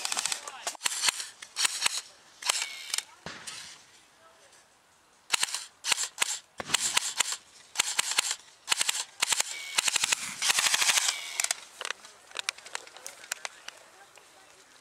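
Airsoft electric rifles firing on full auto in a series of short, rapid bursts of clicking shots, with a lull about four seconds in and scattered single shots near the end.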